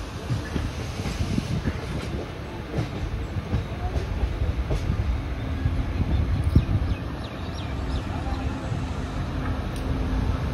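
Passenger train running, heard from the open doorway of a coach: a steady low rumble of the wheels on the rails with scattered sharp clacks and knocks. A faint steady hum joins in about halfway through.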